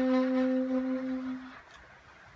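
Soprano saxophone holding the final long note of a jazz tune, fading out and stopping about one and a half seconds in.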